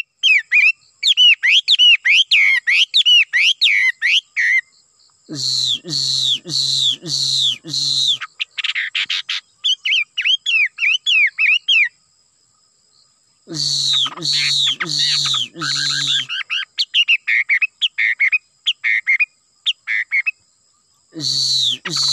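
Caged songbird singing loudly in bouts: quick runs of clear whistled notes gliding up and down, alternating with harsh, buzzy notes repeated about twice a second.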